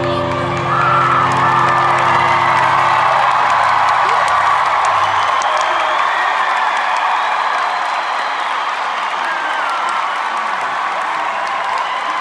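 A large arena crowd cheering and whooping at the end of a song, the cheering swelling about a second in, while the band's last held chord fades out over the first few seconds.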